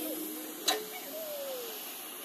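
Faint steady hiss with a single sharp click about two-thirds of a second in.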